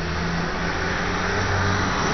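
Steady engine hum and road noise of a motor vehicle running close by, a little louder toward the end.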